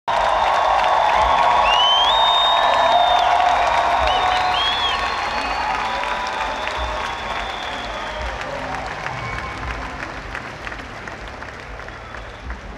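Large concert crowd applauding and cheering, with a few shrill whistles in the first few seconds; the applause is loudest at the start and slowly dies down.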